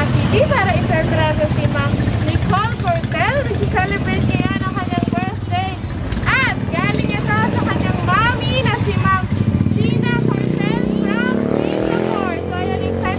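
A motor vehicle engine running steadily under a voice, its low hum rising in pitch near the end as it speeds up.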